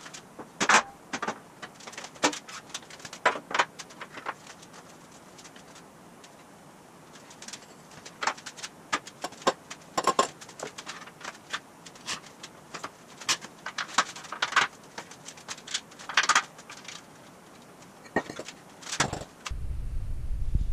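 Irregular metallic clinks and knocks of a steel hot rod frame, its parts and hand tools being handled and fitted onto the axles. The sharp strikes come one or a few at a time every second or so over a quiet shop background.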